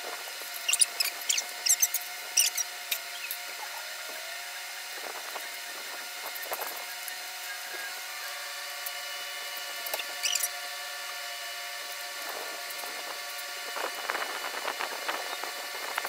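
Felt-tip markers squeaking and scratching as they are drawn along shoelaces, in short high squeaks bunched in the first few seconds and again about ten seconds in, over a faint steady hum.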